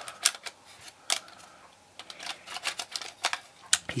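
Irregular sharp plastic clicks and knocks, about eight in four seconds, from a Canon BG-E7 battery grip and its battery magazine being handled and slid into place.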